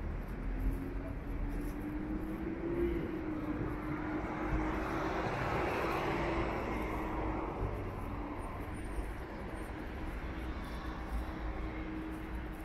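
A car driving past close by on the street, its noise swelling to a peak about halfway through and then fading, over a steady low hum.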